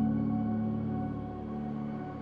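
Slow solo piano music: a held low chord rings on and slowly fades, with no new notes struck.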